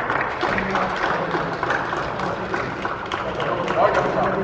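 Several men's voices shouting and talking across an indoor sports hall, with scattered short sharp taps and a brief rising call near the end.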